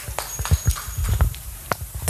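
A small audience clapping: scattered, uneven hand claps rather than a full burst of applause.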